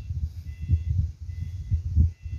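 Wind buffeting the microphone: an irregular low rumble that rises and falls.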